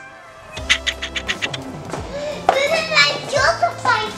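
A young girl's voice over background music, with a quick run of light clicks about a second in.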